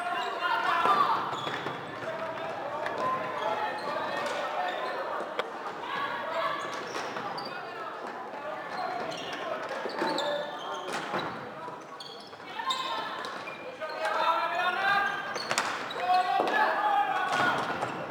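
Floorball game play in a sports hall: players calling out to each other, with sharp clacks of sticks striking the plastic ball and each other, echoing in the large hall. The voices are loudest near the end.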